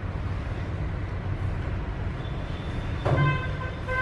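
Steady low hum, with a vehicle horn from the street tooting twice briefly near the end: one steady pitched note with even overtones.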